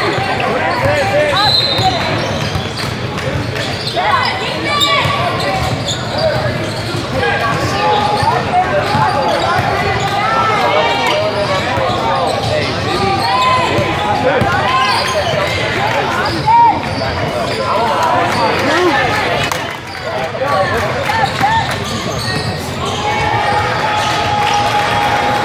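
Basketball being bounced during play on a hardwood gym court, among voices calling out and the busy noise of players moving, all echoing in a large gym.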